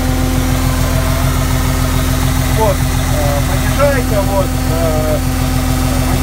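Loud, steady idle of a Jinma 264 tractor's three-cylinder engine, heard from inside the cab.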